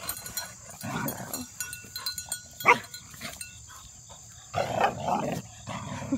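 Goats bleating in several short separate calls as the herd runs up to the fence, the loudest and longest call about five seconds in.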